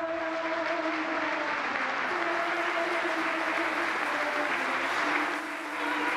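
A congregation applauding steadily, with a few sustained musical notes held underneath.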